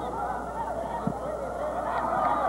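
Many voices at a football match shouting and calling out at once, overlapping and unintelligible.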